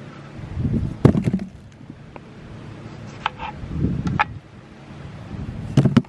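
Cut potato pieces dropping into a cardboard box: a few separate dull thuds with sharper knocks, about four in all, over a low steady rumble.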